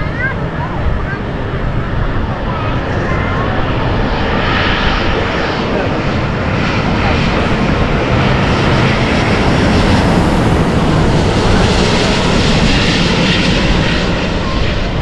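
Vietnam Airlines Airbus A350 twin-jet on landing approach passing low overhead, its Rolls-Royce Trent XWB turbofans making a steady jet roar. The roar grows louder over about ten seconds, then holds.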